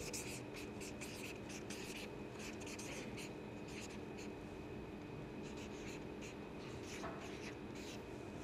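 Marker pen writing on a card held up in the hand: short, faint strokes in irregular clusters with pauses between letters, over a faint steady hum.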